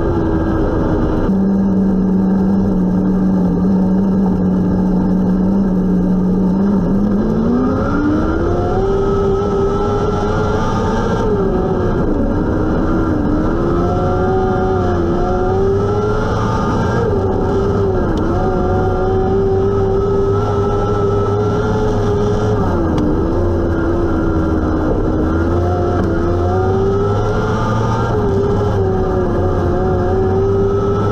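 Micro sprint car engine heard from inside the cockpit. It runs low and steady at caution pace for the first several seconds, then revs up at about seven seconds and holds high revs, with a short dip every few seconds as the throttle is lifted for the corners.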